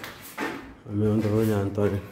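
A person's voice making a drawn-out sound, held for about a second near the end, after a couple of short knocks.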